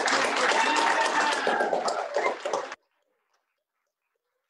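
Applause with some voices over it, cutting off abruptly just under three seconds in.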